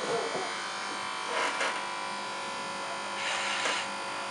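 Electric hair clipper running with a steady buzz, with two brief hissy swells about one and a half and three and a half seconds in.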